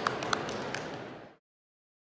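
Indoor arena ambience: a steady hubbub with a few sharp taps, fading out to silence about a second and a half in.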